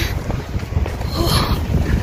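Wind buffeting a phone's microphone outdoors, a low, uneven rumble, with a brief hiss a little over a second in.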